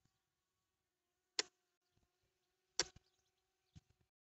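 Two sharp clicks about a second and a half apart, then a fainter one near the end, over a faint steady hum.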